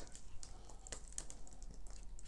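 Thinned acrylic pour paint dripping off the edge of a tilted canvas onto plastic sheeting, making faint, irregular small ticks.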